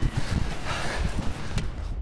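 Footsteps of a person walking briskly outdoors, with wind rumbling on the microphone over a steady hiss.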